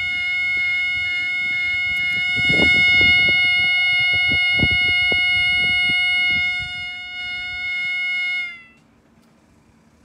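UK level crossing alarm sounder giving a continuous flat tone at one steady pitch rather than a yelp, a fault the recordist says it has had for about six years. It cuts off with a slight drop in pitch about two-thirds of the way in. A few clicks and knocks sound over the tone in the middle.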